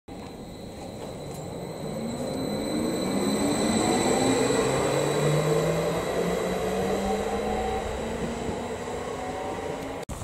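A MÁV class 415 Stadler FLIRT electric multiple unit pulling away. Its traction drive whines in several tones that rise steadily in pitch as it accelerates. The sound grows louder for the first few seconds as the train passes, then slowly fades.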